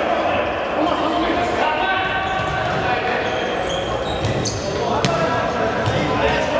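Live sound of an indoor futsal game in a large echoing sports hall: players' voices calling over a steady din, with a sharp knock about five seconds in, typical of the ball being kicked.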